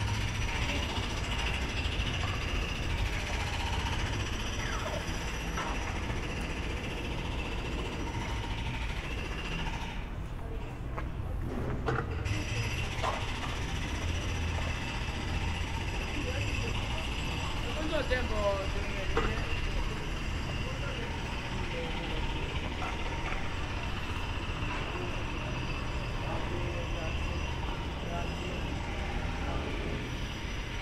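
Outdoor street ambience of indistinct voices, people talking around the walker, over a steady low background noise. A voice stands out briefly about eighteen seconds in.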